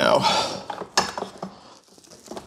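The thick charging cable of an Emporia 48-amp EV charger, frozen stiff in a freezer, being unwound and bent by hand: scattered cracking and clicking from the cold cable, with a sharp click about a second in.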